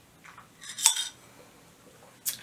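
A drinking glass of iced coffee clinking once, about a second in: a short, bright chink that rings briefly. A few fainter small sounds come just before it.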